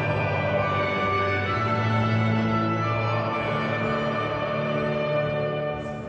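A majestic orchestral anthem playing, with long held chords.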